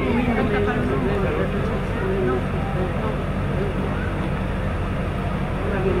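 Steady low hum with faint, indistinct voices murmuring underneath.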